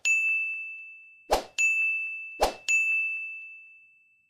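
End-screen button-animation sound effects: a bright bell-like ding that rings out and fades, then twice more a short swish followed by the same ding, the last one still ringing at the end.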